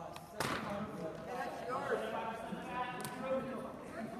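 Indistinct voices talking in a large, echoing gymnasium, with one hard thud about half a second in and a short sharp click around three seconds.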